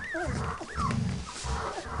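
Three-week-old Airedale Terrier puppies whimpering: two short, high squeaky cries that slide in pitch, one at the start and one just before the middle.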